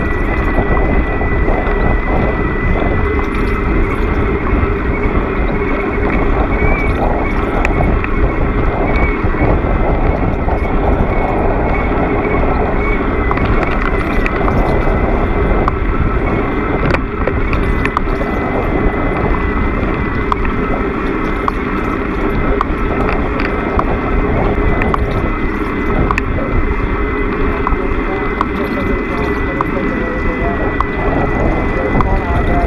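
Bicycle ride heard through a bike-mounted action camera: steady wind and road noise with a constant high-pitched tone and scattered light rattles.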